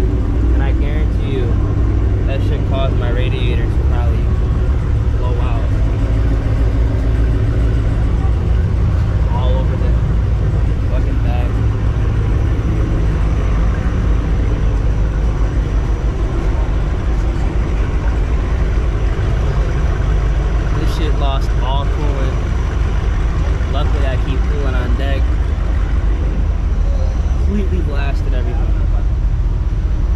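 A steady low rumble throughout, with people's voices talking at times: in the first few seconds, briefly near ten seconds, and again through much of the last ten seconds.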